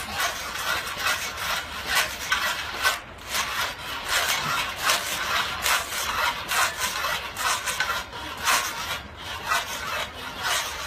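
Pedal-driven reciprocating saw blade cutting through a log, rasping back and forth in steady repeated strokes, about two a second.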